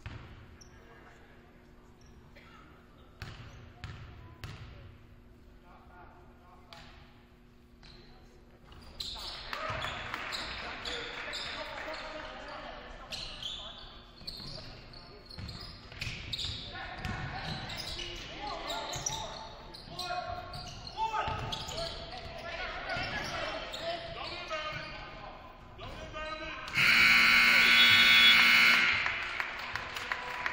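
Basketball game in a large, echoing gym: scattered ball bounces and knocks at first, then from about nine seconds in a busier stretch of players' and spectators' shouts, crowd noise and sneaker squeaks. Near the end the scoreboard horn sounds loudly for about two seconds, a steady buzzing tone marking the end of the game.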